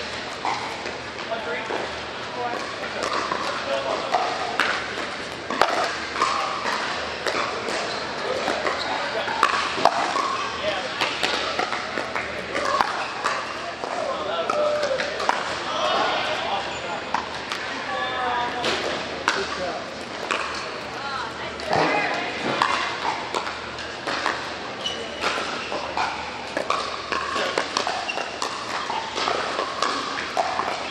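Pickleball paddles striking a plastic ball: sharp pops at irregular intervals through the rallies, with more pops from nearby courts, over people talking in a large indoor hall.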